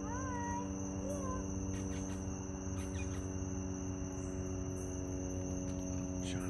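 A steady night chorus of insects, typical of crickets, over a constant electrical hum. A short rising-and-falling call sounds right at the start, with a fainter one about a second in, and there are a few faint clicks.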